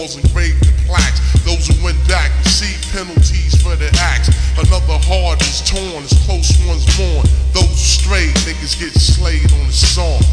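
Hip-hop track slowed down with heavy added reverb: a rapper's voice over a deep, sustained bass line and drum hits. The bass briefly drops out about every three seconds.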